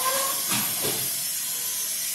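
Steady high-pitched hiss of the recording's background noise during a pause in an elderly man's speech, with a couple of brief, faint voice sounds from him in the first second.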